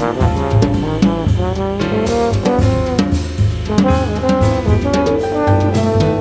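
Big band jazz: trombones play a bending, sliding melodic line over drum kit and bass.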